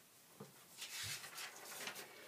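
Faint rustling and handling noise of someone fetching a paper notepad, with a soft knock about half a second in and a light rustle from about a second in.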